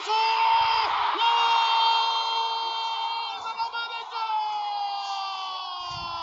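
Football TV commentator's long, drawn-out goal call, a single voice held on sustained notes that slowly sink in pitch and break for breath about a second in and again about four seconds in. A stadium crowd cheers underneath: a goal has just been scored.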